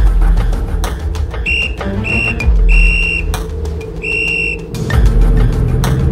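A traffic police whistle blown four times: two short blasts, then two longer ones, all on one high pitch. Underneath runs a dramatic music score with deep drum hits.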